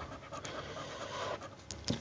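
Faint, uneven scratching of a coin or fingernail rubbing the coating off a scratch-off lottery ticket, uncovering the next call number.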